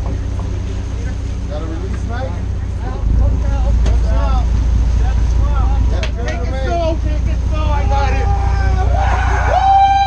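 Sportfishing boat's engines running with a steady low drone that gets louder about three seconds in, under crew shouting. Near the end one long drawn-out shout rises above the rest.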